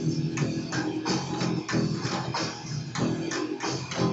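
Electric bass guitar played along to a recorded rock song with a steady drum beat.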